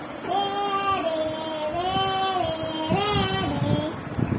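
A child's voice singing a few long, held notes.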